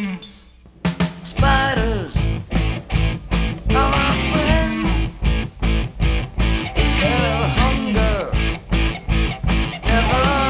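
Rock band recording with drums, bass and electric guitar: the band stops for under a second near the start, then comes back in on a steady beat.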